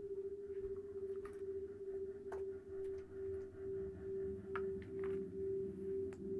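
A steady, mid-pitched sustained drone tone from an experimental noise-music performance, which from about two seconds in pulses regularly, about twice a second. A few faint clicks and taps sound over it.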